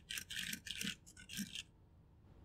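Typing on a computer keyboard: an irregular run of quick key clicks that stops a little after one and a half seconds in.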